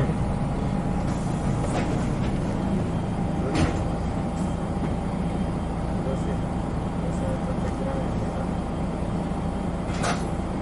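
Interior sound of a 1996 Hino Blue Ribbon route bus's diesel engine running as the bus slows to a stop and idles. There is a steady low engine hum with a thin whine above it, and two sharp knocks about two and three and a half seconds in.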